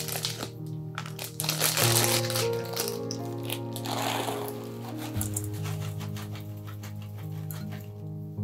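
A plastic bag of chocolate chips crinkling and crackling as it is handled and opened, in a run of sharp crackles with two denser rustling bursts, over steady background music.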